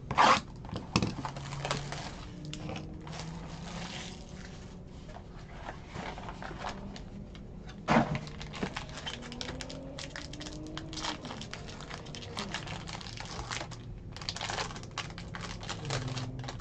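Foil trading-card pack wrappers crinkling and tearing as packs are handled and ripped open. The crackling comes in irregular bursts, loudest about a second in and again about halfway through.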